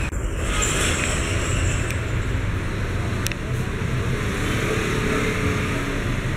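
Steady road traffic noise, a low rumble without a clear pitch, with one sharp click about three seconds in.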